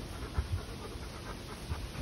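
Rottweiler panting close by.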